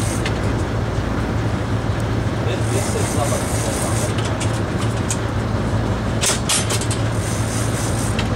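Sport-fishing boat's engines running with a steady low drone, over wind and water noise, with a few brief clatters about six seconds in.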